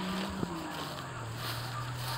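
A steady low hum from a distant motor, with one short click about half a second in.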